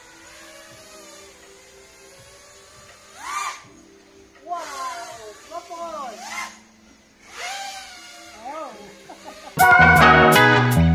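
A few short, high-pitched voices calling out in quick rises and falls of pitch, over a faint steady hum. Upbeat background music cuts back in near the end.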